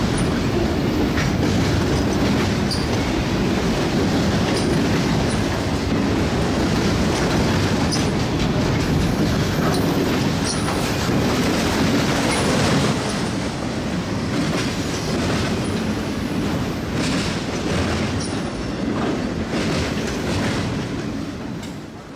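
Freight cars of a long CSX mixed freight rolling past: a steady, loud rumble of wheels on rail, with scattered clicks as wheels cross rail joints. It gets a little quieter after about halfway.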